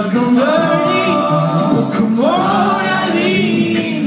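Male a cappella group singing live through microphones, several voices holding chords together. A new phrase swells up in pitch about two seconds in and is held.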